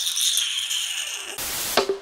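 A static-like hiss with a faint high whistle in it, then a brief louder rushing noise about a second and a half in, and drum-backed music starting just before the end.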